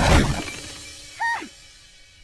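Cartoon crash sound effect: a loud sudden smash that dies away over about half a second, followed about a second later by a brief high squeak.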